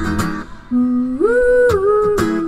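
Live acoustic guitar chord ringing out and fading, then after a short gap a woman's wordless hummed vocal line that glides up to a held higher note and steps down slightly near the end.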